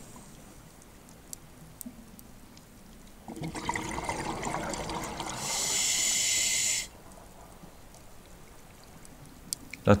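Underwater water noise. About three seconds in, a bubbling rush starts and lasts some three seconds, with a hiss over its last second and a half before it cuts off and the quiet water sound returns.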